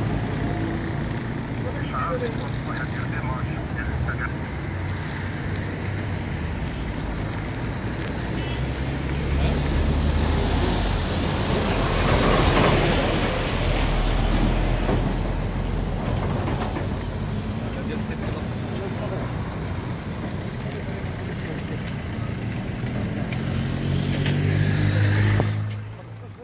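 Voices talking over the low running of motor vehicle engines and road traffic, with a vehicle passing, louder about ten to fifteen seconds in.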